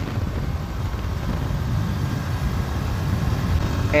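Steady low rumble of a motorcycle riding along a road, with engine and road noise heard from the rider's position.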